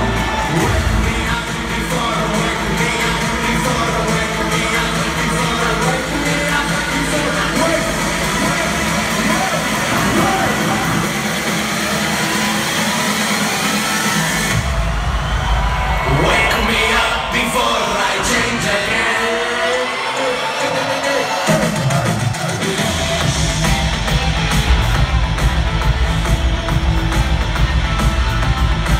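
Live electronic psytrance-rock music with vocals, played loud over a concert PA and heard from within the crowd. About halfway through the bass beat drops out for a breakdown of sweeping rising sounds, and the driving beat comes back in near the end.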